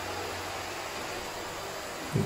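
Vacuum cleaner running with a steady hiss.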